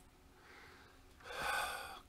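A man breathing heavily close to the microphone: a faint breath about half a second in, then a louder, longer one that starts a little after a second and runs under a second.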